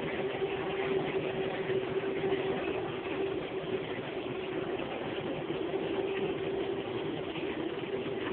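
Supermarket background hum: a steady mechanical drone with one constant mid-pitched tone over even, rumbling background noise.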